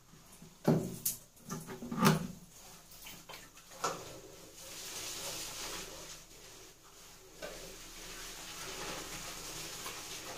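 Shampoo being worked by hand into long wet hair. A few sharp knocks in the first four seconds are followed by a soft, even wet hiss of lathering that dips briefly about seven seconds in.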